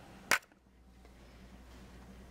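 One sharp click about a third of a second in, from the camera being handled as it zooms in, then faint room tone.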